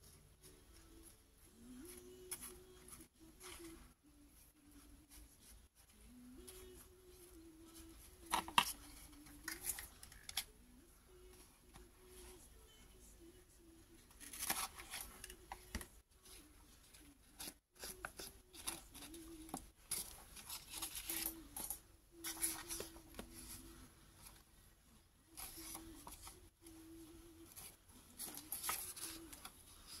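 Scratchy strokes of a flat glue brush over paper, and paper being handled and rustled, coming in irregular bursts. A faint low wavering hum runs underneath.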